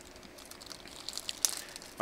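A small plastic bag of quick-connect electrical connectors crinkling as it is handled: faint scattered rustles and light clicks that grow busier in the second half.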